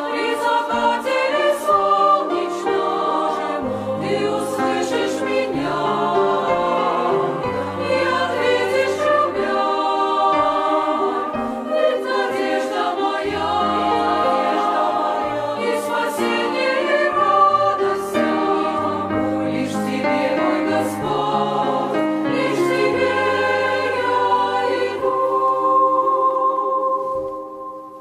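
Women's choir singing a Russian hymn in several-part harmony, with grand piano accompaniment carrying stepped bass notes underneath.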